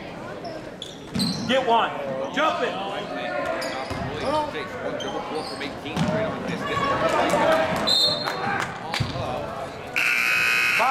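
A basketball bouncing on a hardwood gym floor during play, with spectators shouting and talking throughout.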